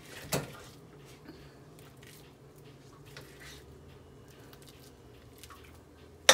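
Faint kitchen handling sounds as mashed potato is scooped and pressed onto a metal baking sheet, with one sharp knock about a third of a second in. A steady low hum runs underneath.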